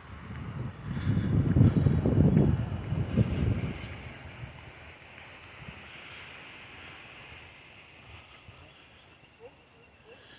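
Wind buffeting the microphone: a heavy, uneven low rumble from about a second in until about four seconds, then easing to a faint steady rush.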